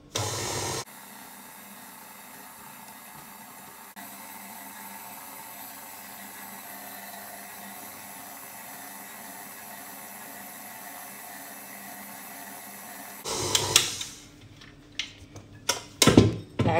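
KitchenAid Artisan stand mixer running steadily while its dough hook kneads bread dough in the steel bowl. It is louder briefly at the start and again near the end.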